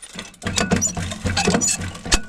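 Sunflower seed pattering as it spills out of a Monosem planter's seed meter with the cover pulled back. It is a dense run of small clicks that starts about half a second in.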